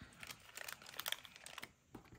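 Faint crinkling of a plastic package and scattered light clicks as hands handle a roll of copper foil tape and a small glass bottle.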